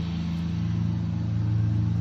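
Lawn mower engine running steadily in the background, an even low hum with no change in pitch.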